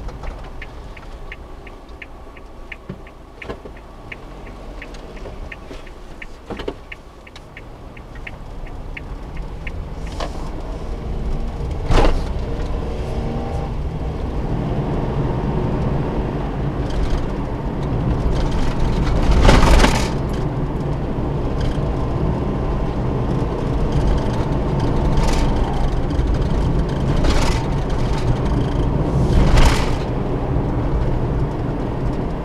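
Inside a Suzuki Every kei van through a dashcam microphone. The turn-signal indicator ticks evenly, about three clicks a second, for the first nine seconds or so. Then the engine and road noise grow louder as the van pulls away and drives on, with a few loud knocks along the way.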